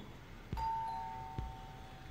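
Two-tone doorbell chime: a higher 'ding' about half a second in, then a lower 'dong' that rings on for about a second, fairly faint.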